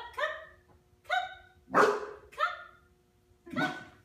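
A dog barking: about five short, separate barks, spaced unevenly across the few seconds.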